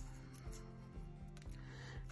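Faint background music, with a few light ticks of washi tape and paper being handled.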